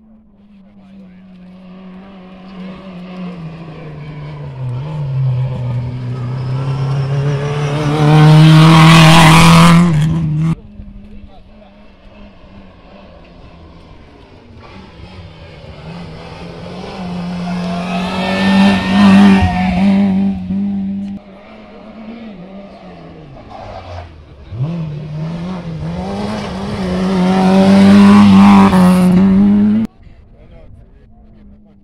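Rally cars' engines at high revs on a special stage, three in turn, each growing louder as it approaches and cutting off suddenly.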